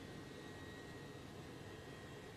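Faint, steady hiss of the space station's cabin ventilation fans and running equipment, with a thin, steady high whine over it.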